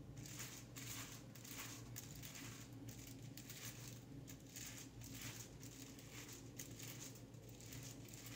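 Faint, soft brushing and rustling strokes, about two a second, as a tint brush works bleach into a section of hair laid over aluminium foil, over a low steady hum.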